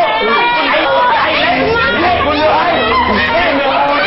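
Several voices shouting and yelling over one another in a scuffle.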